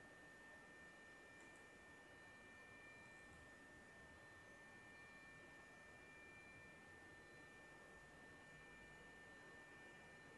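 Near silence: faint recording hiss with a thin, steady high-pitched tone.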